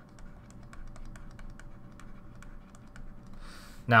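Stylus tapping on a tablet screen while writing, heard as faint, irregular ticks, several a second.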